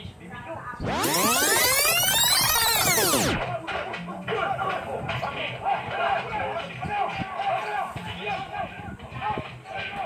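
A loud sound effect, many tones sweeping up in pitch and back down, lasting about two and a half seconds from about a second in. It plays over background music with a voice in it.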